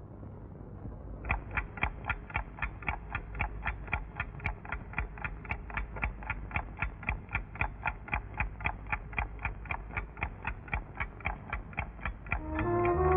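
Suspense film-score cue: a steady, rapid ticking, about four ticks a second, over a low rumbling drone, the ticking starting about a second in.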